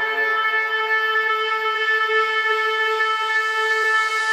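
Sustained electronic synth tone in a tech-house track, several pitches held steady like a drone, with no drums or bass under it: a breakdown in the track.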